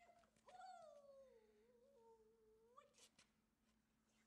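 A dog's long high whine, sliding slowly down in pitch for about two seconds and lifting again at the end, followed by a short sharp click.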